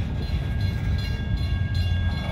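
Double-stack intermodal freight train rolling past at close range: a steady low rumble of well cars' wheels on the rail.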